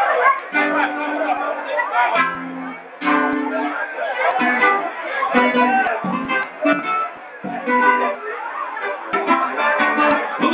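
A samba group playing live: a plucked string instrument with voices over it, and crowd chatter around.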